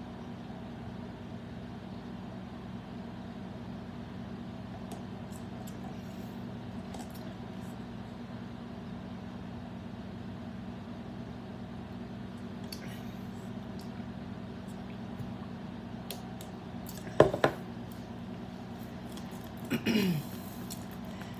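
Steady low hum, with a few faint clicks and one brief, sharp, loud noise a few seconds before the end.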